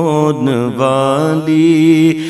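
A man's voice reciting an Urdu naat in a melodic chant. He draws out a syllable with ornamented turns of pitch over a steady low drone.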